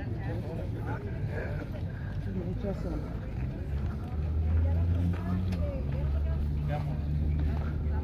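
Faint voices of people nearby, with a low steady engine hum coming in about four seconds in.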